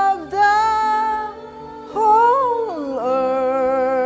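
Worship song being sung with accompaniment. A long held note, then a brief dip, then a note that rises and falls before settling into another long held note.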